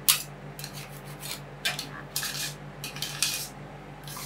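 Metal ice cream roll spatulas scraping and chopping frozen soda slush on a stainless steel cold plate: about seven short, crisp scrapes and clinks of steel on steel and ice.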